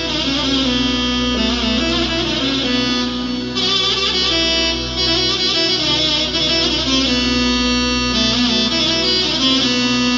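Korg M3 workstation keyboard played live: a wavering, ornamented lead melody over a steady low bass drone.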